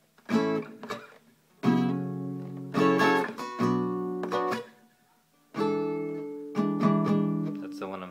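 Acoustic guitar strumming a progression of barre chords, each struck and left to ring out, in two phrases with short pauses between. One of them is an E7 voicing the player is still struggling to fret cleanly.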